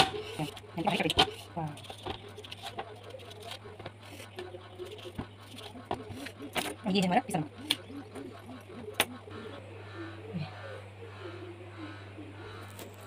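Knife cutting and scraping a large hill cucumber on a ceramic plate, with scattered sharp clicks as the blade taps the plate. A voice sounds indistinctly in the background at times, over a low steady hum.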